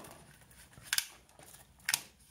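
Plastic packaging crinkling as a camera battery charger is unwrapped and handled, with two short crisp crackles, about a second in and again near the end.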